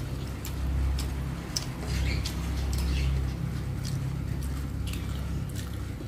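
Eating by hand: sharp wet mouth clicks and smacks of chewing rice, with fingers mixing rice on the plate. A low rumble runs underneath and swells twice in the first half.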